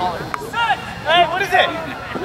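Short shouted calls from voices on and around the rugby field, over a background of crowd chatter.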